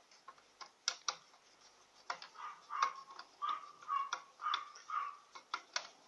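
Screwdriver turning a screw into a Singer sewing machine's top cover: a few sharp clicks, then from about two seconds in a regular run of short squeaks, roughly three a second, as the screw is driven.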